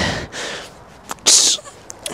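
A man breathing hard through his nose and mouth while folded forward in a stretch: a breath at the start, then a sharp, forceful puff of breath out about a second and a half in.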